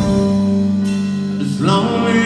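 Live rock band playing a slow ballad through an arena's PA system: grand piano, guitars and drums under a male lead vocal, with the arena's echo.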